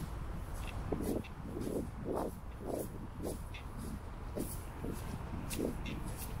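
Footsteps on a sandy path scattered with dry fallen leaves, at a steady walking pace of about two steps a second, over a low steady rumble.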